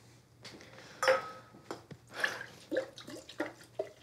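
A glass clinks about a second in, then liquid is poured from a bottle into glasses in several short spurts.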